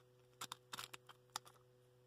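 Faint, sparse clicks and light scratches from fingers handling a hard, brittle piece of baked hemp-seed bioplastic, over a low steady hum.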